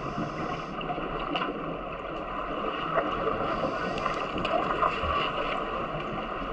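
Water noise heard through a submerged camera in a swimming pool: a steady, muffled rushing hiss with a few scattered small clicks and knocks.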